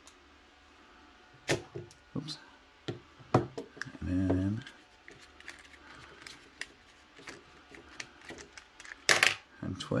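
Scattered plastic clicks and knocks from a flexible mini tripod and its phone clamp being swivelled, bent and handled, with a louder clatter near the end. A brief murmured voice sound about four seconds in.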